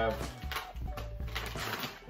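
Fabric backpack and its contents rustling, with light clicks, as they are handled and a clear zippered plastic pouch is lifted out near the end, over a low steady hum.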